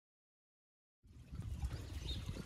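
Silence, then about a second in, the garden pond's small fountain is heard trickling and splashing over a low rumble.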